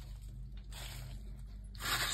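A quiet pause: low steady hum, with faint soft rustles that have no clear strokes.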